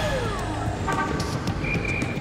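Road-traffic sound effects in a TV title sequence: a steady low rumble of car engines, with a short horn toot about a second in. A falling electronic sliding tone runs in at the start, and a steady high beep sounds near the end.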